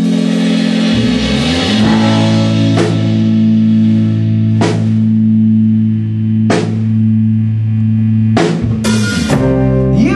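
Live rock band playing an instrumental passage: electric guitar and bass hold ringing chords while the drum kit marks the beat with cymbal crashes about every two seconds, then a quick run of hits near the end.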